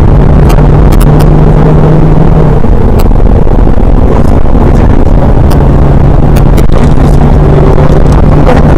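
BMW 120d's four-cylinder turbodiesel heard loud from inside the cabin at track speed, a steady engine drone over road and wind noise. The drone eases from about two and a half seconds in and comes back about five seconds in, with frequent sharp clicks throughout.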